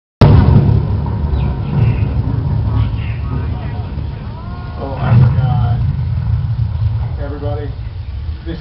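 Steady low rumble of a studio-tour tram running, louder just after the start and again about five seconds in, with passengers' voices talking in the background.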